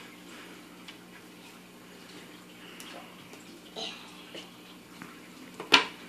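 A room with a faint steady hum, a few soft small sounds, then one sharp slap on a wooden tabletop near the end.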